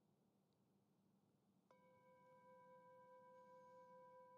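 A faint bell-like chime sounds once, a little under two seconds in, and rings on steadily with several clear tones: a meditation chime closing a guided meditation.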